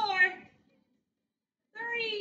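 A woman's voice calling out two short, drawn-out words about two seconds apart, each high in pitch and falling slightly at the end.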